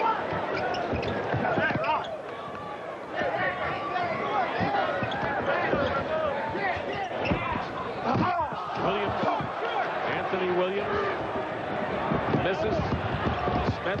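Basketball being dribbled and bounced on a hardwood court, with the arena crowd's voices throughout.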